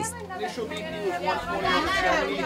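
Emergency room staff talking over one another in indistinct chatter, several voices at once.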